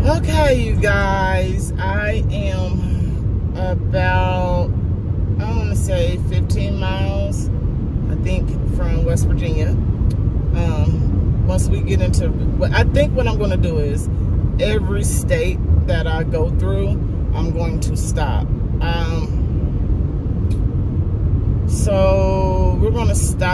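A woman talking over steady road and engine noise inside a moving car's cabin.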